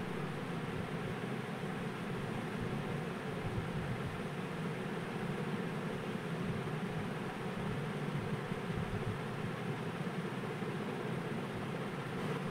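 Steady, even background noise with no distinct knocks or clicks.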